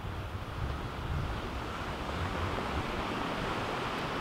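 Ocean surf washing on a beach together with wind, heard through a camera-mounted Rode VideoMic GO with a furry windscreen: a steady rush of waves over an uneven, gusty low rumble of wind on the microphone.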